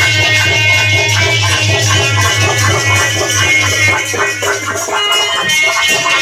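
Loud music with a fast, steady bass beat under a melody.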